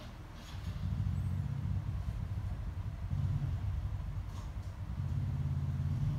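A low engine rumble that swells about a second in, dips briefly a couple of times and rises again near the end.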